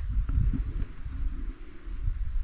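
Steady high-pitched chorus of insects such as crickets, over an irregular low rumble.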